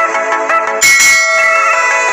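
Electronic intro music playing, with a bell-like notification ding from a subscribe-button animation about a second in.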